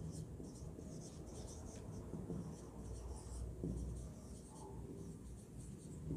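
Marker pen writing on a whiteboard: faint, short scratching strokes coming in irregular bursts as a line of handwriting is written out.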